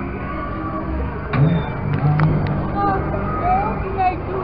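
Funfair ambience: a steady low machine hum from a children's elephant ride running, with a few sharp clacks about a second and two seconds in and distant voices.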